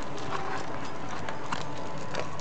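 Several small dogs eating dry food from stainless steel bowls: irregular clinks and clicks of kibble and muzzles against the metal bowls, over a steady background hiss.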